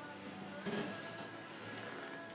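Quiet music with several long held notes, and a brief louder sound a little before the middle.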